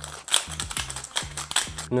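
Hand pepper mill being twisted to grind black pepper: a rapid run of gritty clicks.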